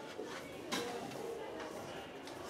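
Felt-tip marker writing on a whiteboard, with faint stroke sounds and one sharp tap about three-quarters of a second in, over a low murmur of voices in the room.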